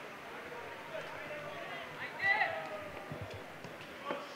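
Faint open-air ambience of a football match in a sparsely filled stadium: distant voices of players and spectators, with one voice calling out more loudly a little after two seconds in.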